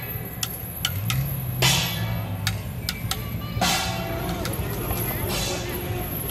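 Procession percussion: sharp clicks and three ringing crashes about two seconds apart, each fading away. Beneath them runs the low sound of a pickup truck moving slowly close by.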